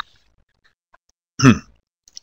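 Near silence, then a single short throat-clear from a person about one and a half seconds in.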